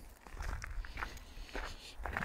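Footsteps on a gravel road, a handful of short crunches over a low rumble.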